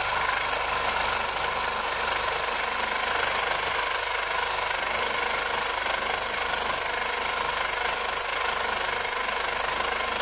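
Reciprocating saw with a Diablo Steel Demon blade cutting through black steel pipe: a steady, very noisy metal-on-metal sawing with a high whine running through it.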